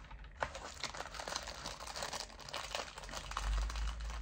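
Crinkling and rustling of a printed wrapper-covered packet being handled, a run of small crackles and clicks with one sharper click about half a second in.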